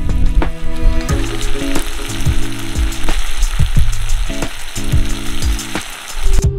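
Chicken, corn and melting cheese sizzling in a cast-iron skillet over a charcoal grill, a steady hiss that starts about a second in, under background music.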